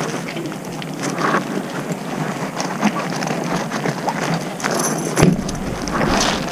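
Someone rummaging for coins, with rustling and a run of small, irregular clicks and knocks. A louder thump comes near the end.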